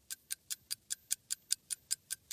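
Ticking clock sound effect: evenly spaced sharp ticks, about five a second.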